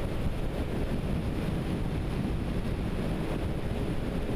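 Steady wind buffeting the microphone on a moving motorboat, with the boat's motor running underneath.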